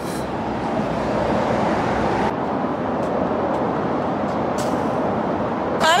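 Steady road traffic noise, with a few faint clicks.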